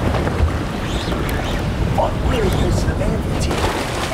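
Wind rumbling on the microphone over water washing along a boat's side, with a short fragment of voice about two seconds in.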